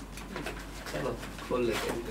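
Soft handling noise of a small cardboard product box being opened and a pocket-sized gadget slid out of it, with a faint low voice under it.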